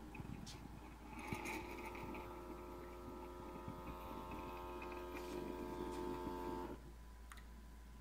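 Cuisinart single-serve brewer's pump humming steadily at the end of a brew cycle. It starts with a click about a second in, runs about five and a half seconds and cuts off suddenly near the end.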